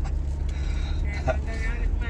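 Steady low rumble of a moving car's engine and tyres heard inside the cabin.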